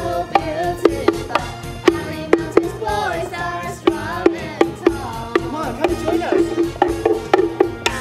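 Music with a steady beat of sharp percussive strikes, about two a second, and a singing voice gliding in pitch over it in the middle.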